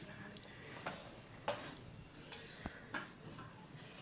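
Faint, sparse clicks and light taps from hands working yarn and a threading hook on a wooden rigid-heddle loom, with two sharper ticks about one and a half and three seconds in.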